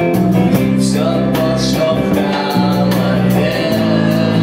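A live rock band playing: electric guitar, bass guitar and drums, with a man singing over them in held, wavering notes.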